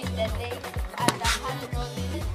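Background Ugandan dance music with a deep bass line and a steady drum beat.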